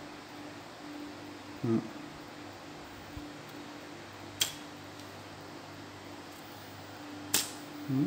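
The thin carbon tip of a Shimano 5H telescopic pole rod is bent into an arc and released. It gives two sharp clicks about three seconds apart, heard over a steady low hum.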